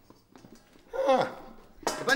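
A short voiced vocal sound from a man about halfway through. Just before the end comes a single sharp knock as a metal serving tray with a wire hanging handle is set down on a table.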